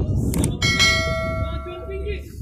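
Subscribe-button overlay sound effects: a sharp mouse click, then a notification bell that strikes once about half a second in and rings on, fading, for over a second, over background crowd murmur.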